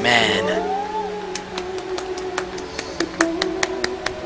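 Played-back live concert ballad: a woman sings a long held note over instrumental accompaniment. A run of sharp clicks sounds through the second half.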